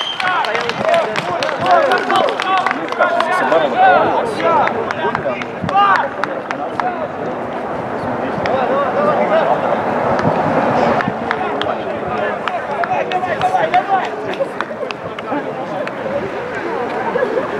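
Players and coaches shouting and calling out across a football pitch during play, several voices overlapping in short bursts.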